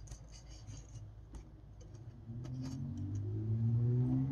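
Light clicks and scrapes of a plastic Transformers Air Raid action figure being handled and turned on a tabletop. About halfway through, low background music fades in and grows louder.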